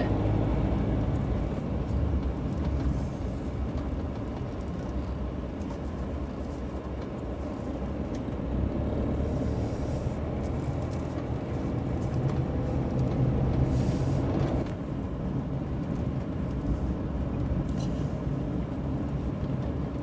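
Camper van's engine and tyre noise heard from inside the cab while driving slowly on a narrow lane. The running noise builds gradually and then drops suddenly about three-quarters of the way through.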